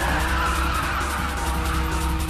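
Nissan Fairlady Z (350Z) drifting, its tyres squealing in one long steady screech over the engine, with music playing underneath.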